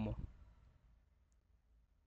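A man's voice says one word, "Como", at the very start, then near silence of a quiet room.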